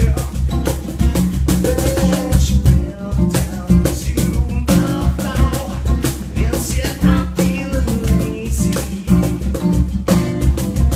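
Live band playing a song: guitar over a drum kit with a strong, steady low end and regular drum hits.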